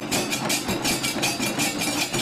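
Troupe of barrel drums beaten with sticks, playing a fast, even rhythm of about six beats a second.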